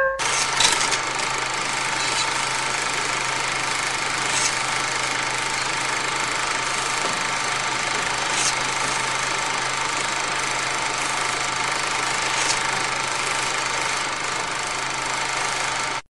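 Film projector running: a steady mechanical whirring with a low hum, and faint clicks about every four seconds.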